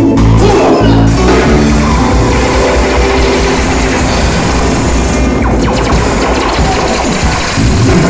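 Live reggae band playing loudly, with drum kit, guitar and keyboards, in a passage without vocals.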